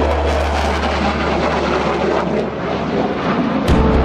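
Jet aircraft flying over, most likely an F-4EJ Phantom with its twin J79 turbojets: a steady low rumble under a broad roar. Music is faintly beneath it, and near the end music with drum beats grows louder.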